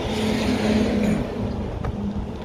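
Road traffic: a vehicle going by, its steady tyre and engine noise dropping in pitch and fading as it passes about a second and a half in.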